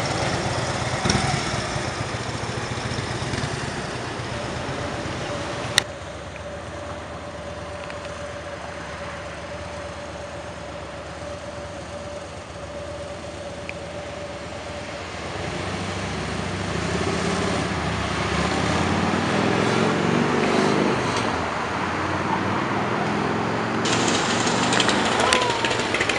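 Harley-Davidson V-twin motorcycle engines idling and pulling away in street traffic, with a hard cut about six seconds in; the engine sound builds again in the second half.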